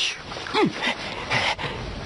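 A few short vocal sounds, the clearest one sliding down in pitch about half a second in, followed by fainter brief ones.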